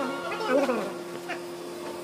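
A person speaking briefly, then a steady faint buzzing hum for the rest of the moment.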